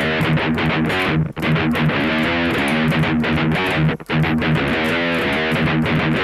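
Electric guitar tuned to C standard, with a heavy distorted tone, slowly playing the opening of a riff on the low strings. It starts with a hammer-on on the sixth string from the first to the third fret, followed by palm-muted strokes on the third fret. There are two short breaks in the playing.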